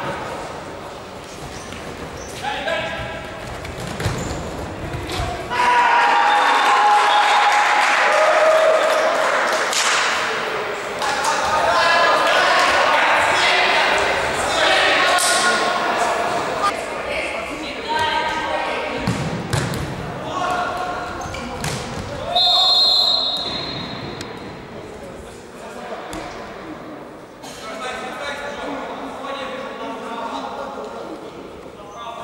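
Indoor futsal game heard in an echoing sports hall: voices shouting and calling across the court, with the ball thudding on the wooden floor. A short, high referee's whistle blast comes about two-thirds of the way through.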